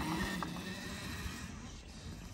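Talaria Sting R electric dirt bike riding away over grass, its faint motor and tyre noise fading as it gets farther off, with a small click about half a second in.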